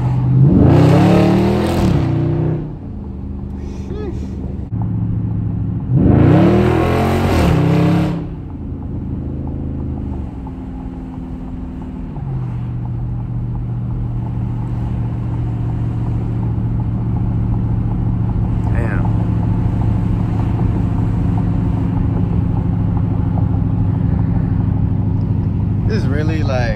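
Dodge Charger Scat Pack's 6.4-litre HEMI V8 heard from inside the cabin, opened up in two short, loud bursts of acceleration about a second in and again about six seconds in, its pitch rising and then falling each time. After that it settles into a steady cruising drone that drops to a lower, even pitch about twelve seconds in.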